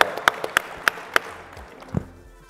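Audience applauding, with one pair of hands clapping steadily at about three claps a second over the general applause, which fades out a little over a second in. A single dull thump near the end.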